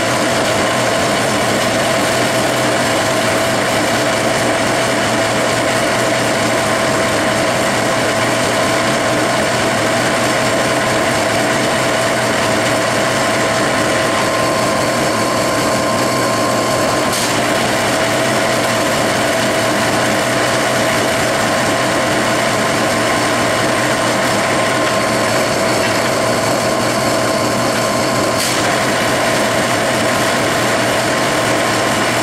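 Metal lathe running in back gear under power feed while a bump-type knurler's two rolls press into a spinning aluminum bar: a loud, steady, noisy gear whine with a constant pitch. Two faint clicks sound, one past the middle and one near the end.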